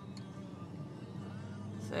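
Steady low hum of a car's engine and tyres heard from inside the cabin while driving, with faint music playing underneath. A sigh comes right at the end.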